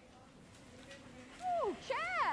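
A dog gives a short whine that falls steeply in pitch, about a second and a half in, after a faint quiet stretch. It is followed by a brief second rising note.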